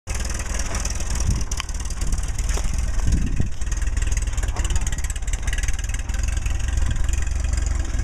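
Old farm tractor's engine running steadily, a low, even engine note throughout.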